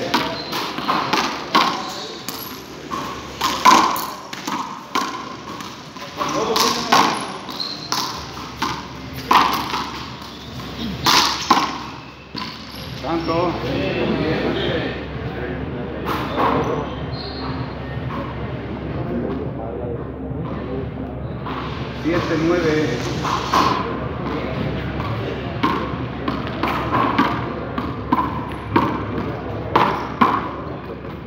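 A frontón ball smacking against the walls and floor of an enclosed court in a rally: a run of sharp, echoing hits in the first dozen seconds, then fewer hits under background voices.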